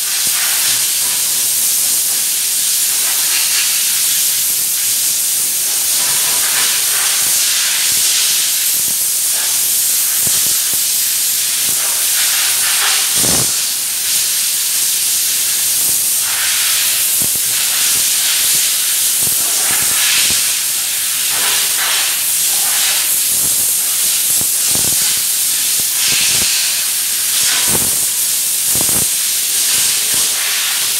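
Compressed-air gravity-feed spray gun hissing steadily as it sprays a coating onto a motorcycle fuel tank, with a few short knocks in the second half.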